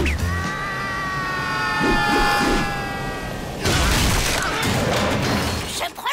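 Cartoon soundtrack: a long, slowly falling held tone for about three and a half seconds, then a loud burst of noise that runs on to the end.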